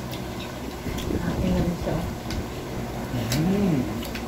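Indistinct voices talking quietly, over a low steady hum, with a couple of faint short clicks.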